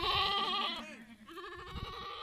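Castrated male goats bleating: two long, quavering bleats, the first right at the start and the second beginning a little past halfway.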